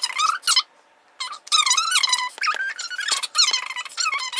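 A squeaky, chipmunk-like pitch-shifted voice chattering in short bursts, with a brief pause about a second in.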